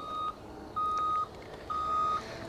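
Vehicle reversing alarm beeping a single steady tone about once a second, each beep about half a second long.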